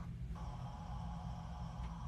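A pause in the talk: a low, steady background hum and room tone.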